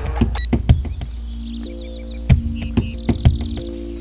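Film background score: percussion hits in a loose rhythm, with held low notes coming in about halfway through. Short high birdlike chirps and a brief trill sound above the music.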